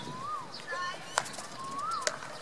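A bird calling twice with a whistled note that rises and then falls, over a sharp crack of a hockey stick striking the ball about a second in.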